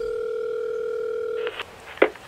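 A steady electronic tone that cuts off with a click about one and a half seconds in, followed by a couple of sharp clicks.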